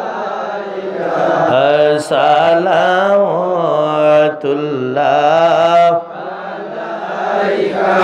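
A man singing a devotional chant in praise of the Prophet into a microphone, amplified through a PA, in long held notes that waver and slide in pitch, with short breaths between phrases.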